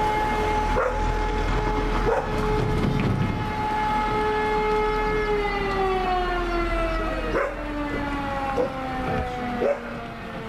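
A motor-driven fire-brigade alarm siren sounds one steady wailing tone, then, about five seconds in, slowly falls in pitch as it winds down. A dog barks several times over it.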